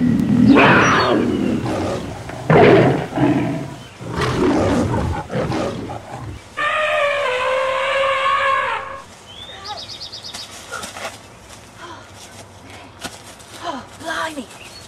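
A staged cat fight: rough growling and screeching in several loud bursts over the first six seconds, then one long held yowl, followed by quieter clicks and rustles.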